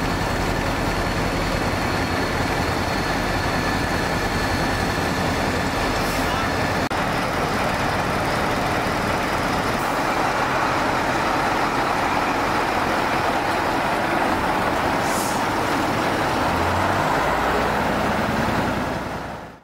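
Heavy fire tanker trucks running, a steady, loud engine noise.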